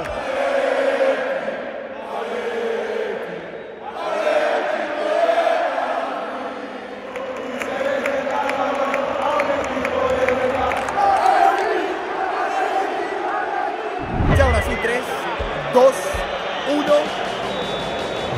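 A packed football stadium crowd singing and chanting together in one sustained mass of voices. A brief low thump comes about fourteen seconds in.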